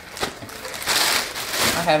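Plastic poly mailer bags rustling and crinkling as they are handled, in irregular bursts with a sharp crackle a fraction of a second in.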